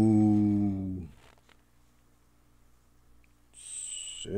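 A man's drawn-out "ooh" held at one low pitch for about a second, then near silence, with a faint high-pitched sound near the end.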